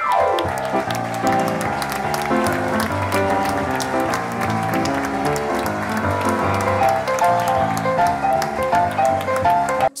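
Live music played on a grand piano, with the audience clapping and applauding over it throughout. The sound cuts off abruptly near the end.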